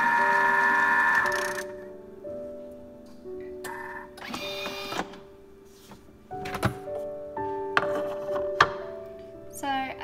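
Thermomix food processor motor running at low speed with a steady whine while mixing flour into a batter, stopping about a second and a half in as it is switched off. Afterwards a few sharp knocks and clicks from the machine's bowl and lid being handled, over soft background music of held notes.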